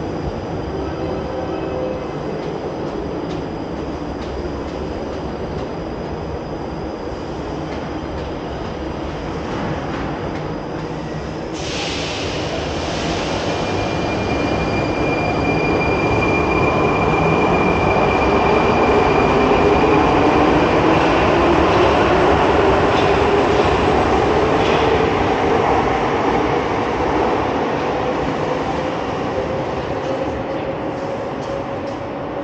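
Prague metro 81-71M train pulling out of the station. A sudden hiss comes about a third of the way in, then a motor whine rises steadily in pitch and grows louder as the train speeds up.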